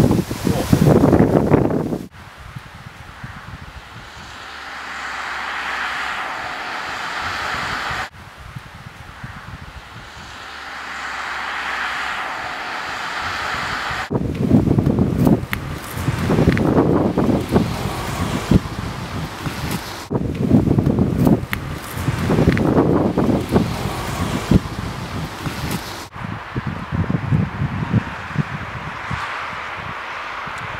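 Outdoor wind ambience that changes abruptly about every six seconds as the shots are cut together. At first it is a hiss that swells and fades; later, about halfway through, it becomes loud gusts of wind buffeting the microphone.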